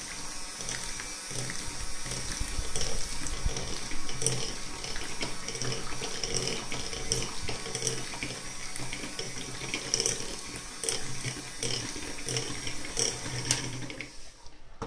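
Electric hand mixer running, its beaters whisking thin pancake batter in a stainless steel pot: a steady motor hum with wet sloshing and scattered light clicks. It cuts off at the very end.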